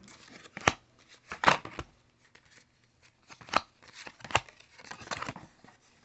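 Hockey trading cards being handled: about five short, sharp clicks and scrapes of card stock, the loudest about a second and a half in, with soft rustling between.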